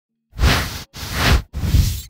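Three whoosh sound effects in quick succession, each a swish about half a second long, like sweeping brush strokes.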